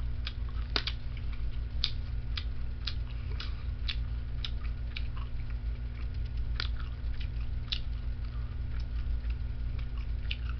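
Someone chewing beef jerky close to the microphone: short clicking chews about twice a second, over a steady low hum.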